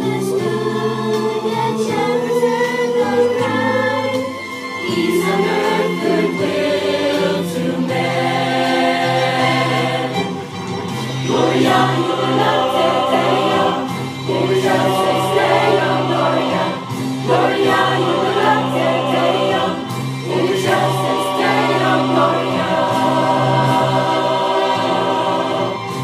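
Church choir singing a Christmas cantata in harmony, over steady sustained low accompaniment notes.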